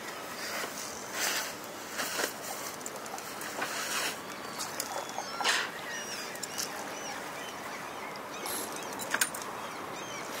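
Irregular small splashes and lapping of calm harbour water, with faint bird chirps now and then.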